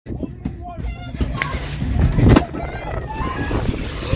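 People's voices at moderate level over a steady low rumble, with a single loud thump a little after two seconds in.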